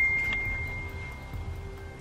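A single high, steady ringing tone, like a struck chime, slowly fading away over quiet background music.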